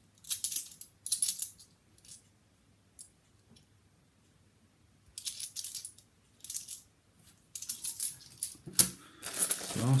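Bimetallic £2 coins clinking together in the hand as they are sorted, in short clusters of bright clicks with pauses between. Near the end, a coin bag rustling as it is crumpled.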